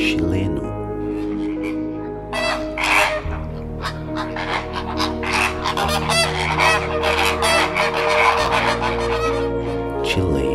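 A flock of Chilean flamingos calling, a dense chatter of many short overlapping calls starting about two seconds in, over soft background music.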